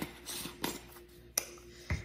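Spice containers being handled on a countertop: a few light plastic clicks as a cap is fitted back on, then a dull knock near the end as a container is set down.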